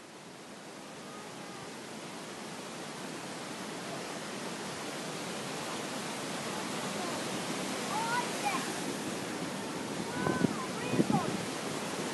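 Steady rushing noise of flowing water, fading in at the start. Near the end come a few brief, higher sliding sounds and two or three sharp knocks.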